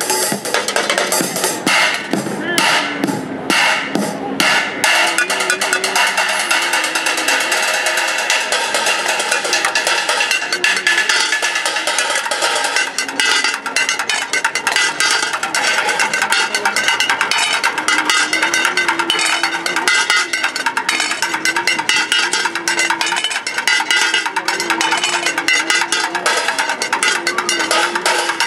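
Fast drumming with wooden sticks on upturned metal pots, pans, cymbals and metal bars: a dense, steady stream of quick metallic clangs and strikes, with a few heavier accents in the first five seconds.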